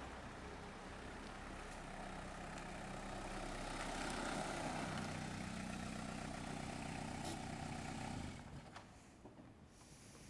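Small hatchback car's engine running as it drives up and pulls in close by, a steady low hum that stops abruptly about eight seconds in.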